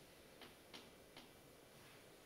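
Near silence of a quiet room, broken by three faint, short clicks in the first half, each about half a second after the last.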